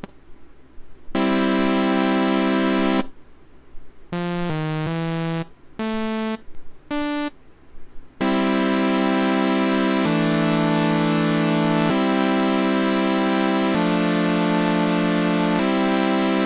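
Native Instruments Massive software synth on a brand-new default patch, playing bright sustained three-note chords. After one held chord and a few short single notes, a chord progression runs from about halfway in, with the chord changing roughly every two seconds.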